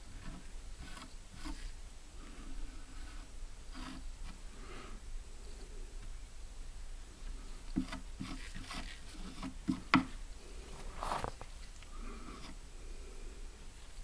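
Faint scraping and small clicks of hand tools working sticky epoxy bedding compound into a rifle stock, with a sharper click about ten seconds in.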